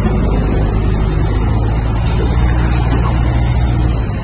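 Ford Cargo 2428 truck's diesel engine running with a steady low drone.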